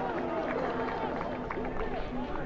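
Faint background voices, well below the commentary level, with a few light ticks.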